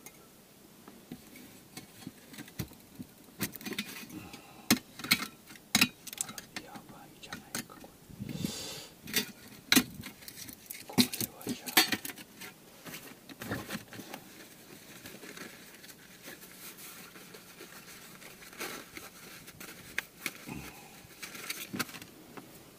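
Irregular metal clinks, taps and scrapes as the parts of a small metal camping-stove stand are handled and set down on a stainless steel tray. The knocks are busiest and loudest around the middle.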